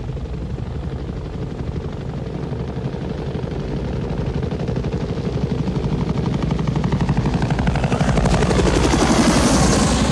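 Several Bell UH-1 'Huey' helicopters approaching, the rapid chop of their rotor blades growing steadily louder and brighter.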